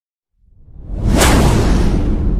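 Whoosh sound effect for a logo transition. After a brief silence, a rushing noise with a deep rumble swells in, peaks just past a second in, and then slowly dies away.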